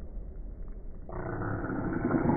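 A man yelling as he strains to pull a heavy barbell off the floor, starting about a second in and held, heard through a muffled, narrow-sounding phone recording.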